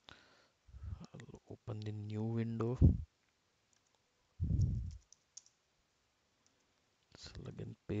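Scattered computer mouse and keyboard clicks, with a man's voice making a drawn-out hesitation sound and a brief murmur between them.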